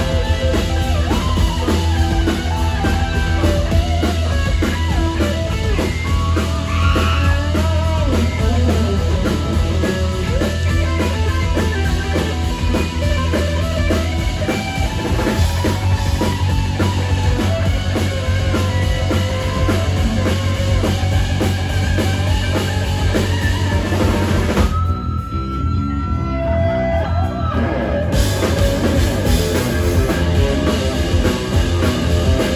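Live rock band playing, with electric guitar leading over drums and bass. Near the end the band drops out for about three seconds, leaving only a few held notes, then comes back in.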